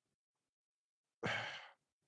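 Dead silence, then about a second in one short, audible breath from a man, like a sigh.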